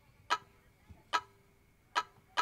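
Three sharp, clock-like ticks about 0.8 seconds apart, each with a brief ringing tone: the percussive lead-in of an intro music track.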